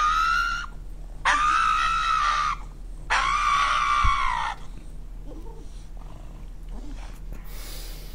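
Pug screaming while its nails are clipped: three long, high-pitched wails, each held steady for about a second, in the first four and a half seconds.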